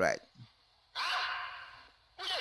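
A sharp, breathy exhalation into a microphone about a second in, starting suddenly and fading away over about a second.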